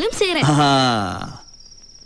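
A man's drawn-out spoken exclamation, falling in pitch and fading out about a second and a half in, just after a brief higher voice at the start.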